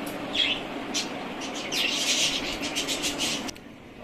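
Small birds chirping, a few single chirps and then a dense run of high chirps, over a steady low hum. All of it cuts off suddenly near the end.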